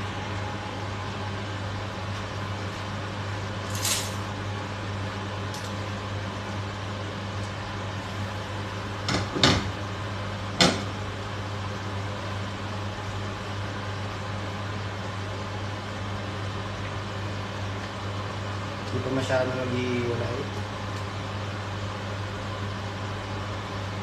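A steady low electric motor hum, as of a kitchen appliance, with a few sharp metal clinks about four, nine and a half and eleven seconds in as the lid comes off the stainless-steel stockpot.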